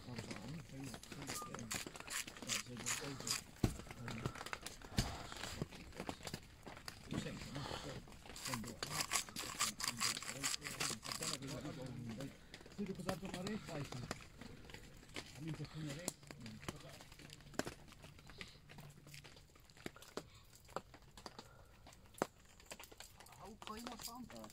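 Indistinct voices talking, with many small sharp clicks and crackles through roughly the first half.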